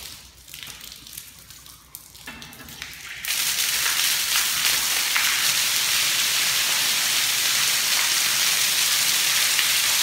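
Backed-up sewage water bursting out of an opened overhead cast iron drain pipe, held back by a main sewer blockage. It starts suddenly about three seconds in and then pours and splashes down steadily and loudly.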